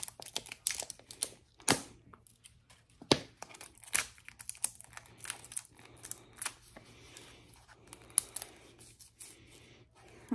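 Plastic wrapping on a toy surprise ball being cut, torn and crinkled, with irregular sharp crackles and a few louder snaps in the first half. The tough plastic is coming off only with a struggle.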